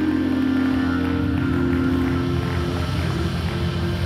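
Live church praise music: sustained held chords over a pulsing low end, at a steady level.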